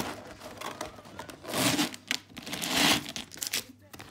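Clear plastic box packaging and tray being handled and pulled apart, crinkling and rustling, with two louder crackling bursts in the middle.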